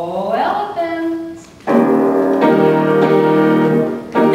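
A voice swoops up in pitch and holds a note. About a second and a half in, a piano comes in with loud, sustained chords, struck again a little later.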